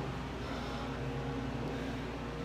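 Steady low hum inside a ThyssenKrupp elevator cab, with a faint steady tone above it and no knocks or clicks.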